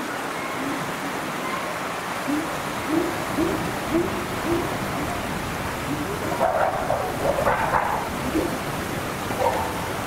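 Chimpanzee pant-hoot: a run of short low hoots about two a second, building to louder, higher calls about six and a half seconds in.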